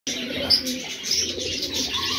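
American fantail pigeons cooing, the low courtship coo of a cock displaying to a hen. Brief high chirps from other birds sound over it, the loudest about half a second in.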